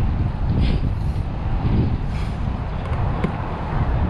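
Wind buffeting the camera's microphone on open water: a steady, loud low rumble.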